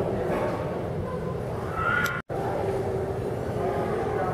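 Room noise of a museum hall with faint background voices. It is broken by a brief total dropout about two seconds in, at an edit cut.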